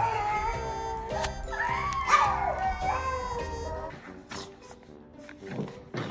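A small dog howling in long, wavering high notes, rising again about two seconds in, over background music, then dying away after about four seconds.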